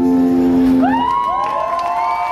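A live band's final guitar chord rings out and stops about halfway through. Then the crowd cheers, with several rising whoops and whistles.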